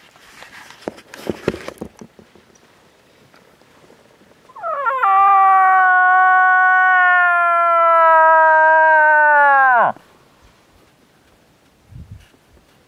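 A cow moose call made by a person: one loud nasal wail, about five seconds long, that rises sharply at the start, holds nearly level, then drops away steeply at the end.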